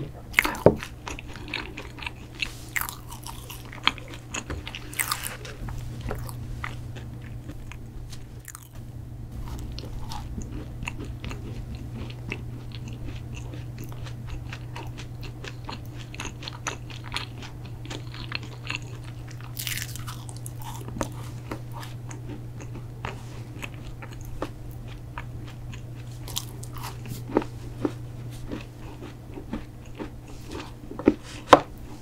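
Close-miked crunching and chewing as pieces of a soft-baked protein cookie are bitten off and eaten, with scattered crisp crackles over a steady low hum.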